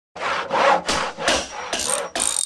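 Saw cutting wood in quick back-and-forth strokes, about five in two seconds.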